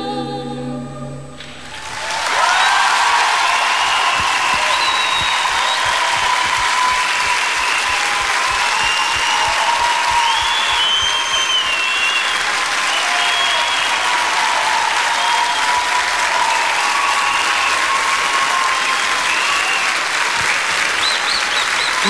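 A women's a cappella folk vocal group holds a final chord that stops about a second and a half in. Then a studio audience applauds steadily, with cheering over the applause, until near the end.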